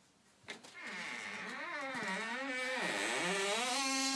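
A dog whining in one long, wavering cry whose pitch dips and rises, growing louder toward the end.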